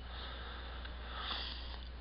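A person drawing breath in through the nose, a soft sniffing inhale close to the microphone that swells a little past the middle.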